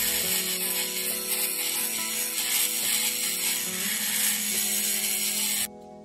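Small handheld rotary tool with a sanding bit grinding the wheel-arch edge of a diecast metal model van body: a steady grinding noise that cuts off shortly before the end.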